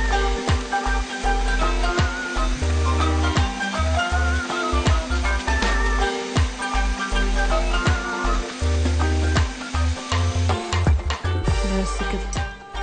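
Background music with a melody and a pulsing beat, over an electric countertop blender running as it blends a thick smoothie. The blender's steady hum ends about ten seconds in.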